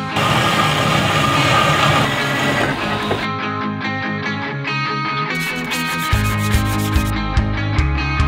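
Metal-cutting band saw running through steel for about three seconds, under rock music. The music then carries on alone, with a heavy beat coming in about six seconds in.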